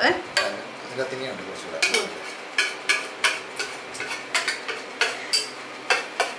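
A spatula scraping and knocking against steel containers as set ice-cream mixture is scooped out of a steel tin into a steel mixer jar. It comes as a string of short, irregular scrapes and clinks, roughly two a second.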